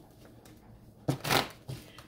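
A deck of tarot cards being shuffled: quiet for about a second, then a quick rustling burst of shuffling and a shorter one just after.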